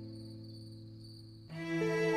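Soft background score with held low string notes dying away, over a steady chirping of crickets; a new, louder chord enters suddenly about three-quarters of the way through.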